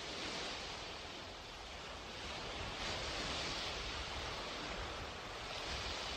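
Ocean surf: waves washing in, a steady rush of noise that swells and fades a few times.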